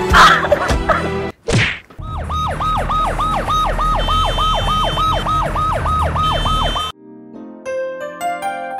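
A hard blow over music at the very start, then a short whoosh. Then an ambulance siren yelping, rising and falling about three times a second over a low traffic rumble for about five seconds, and it cuts off suddenly. Soft piano notes begin near the end.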